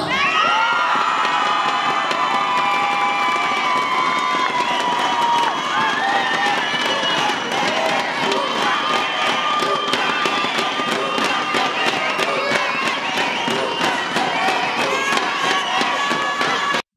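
Audience cheering and screaming, with many high-pitched voices and applause. The clapping becomes more distinct in the second half.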